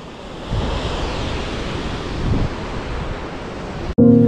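Steady rushing of the Pöllat gorge waterfall far below, with gusts of wind rumbling on the microphone.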